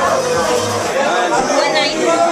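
Several people talking and chattering at once in a crowd, with music playing underneath.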